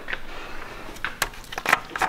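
A few light clicks and taps from about a second in, as a gloved hand reaches in and handles the oil filler cap on top of the engine.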